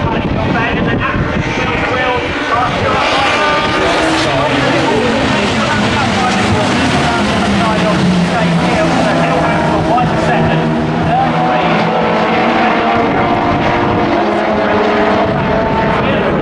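A pack of two-litre Super Touring race cars racing past together, many engines overlapping as they rise and fall in pitch through gear changes and corners, loud throughout.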